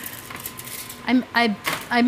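Faint light clinks of cookie dough being worked in a stainless steel mixing bowl, then a woman starts talking about a second in.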